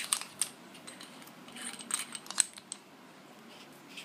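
Sharp metallic clicks and light scraping from a Tank007 TC19 flashlight being handled: a burst of clicks at the start, then a scrape followed by several clicks in the middle.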